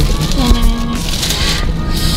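A short spoken "nah" and faint background music over the steady low hum of a car's cabin.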